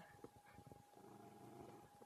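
Near silence: faint scattered ticks and a thin, steady, faint hum.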